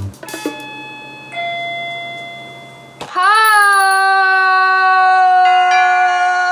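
A two-tone doorbell chime, a higher ding and then a lower dong about a second later, both fading away. From about three seconds in, a loud, long, steady musical note with many overtones is held.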